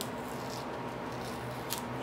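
Steady hum of a room fan, with a brief small click near the end as a metal anklet chain and clasp are handled.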